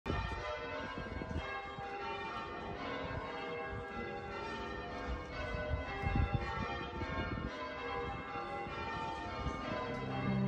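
Bells ringing continuously, with many strikes overlapping and ringing on.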